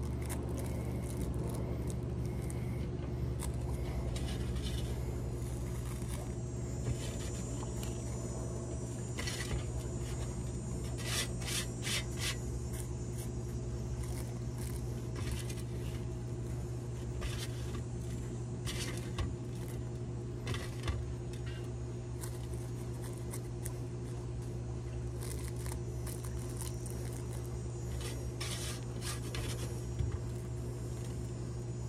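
Rolling paper crinkling and rustling between fingers as a joint is rolled by hand, in short bursts of crackle, most of them around the middle and near the end. Under it runs a steady low hum.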